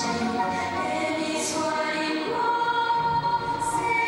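Choral music for the free skating program, a choir singing long held notes, with one note sustained through the second half.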